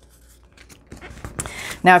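Paper being folded and creased by hand: a few faint scratchy rustles and small clicks in the second half, after a quiet start.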